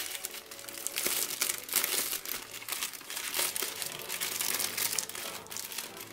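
Clear cellophane gift bag crinkling in irregular bursts as hands handle its crumpled, gathered top and tie a string bow around it.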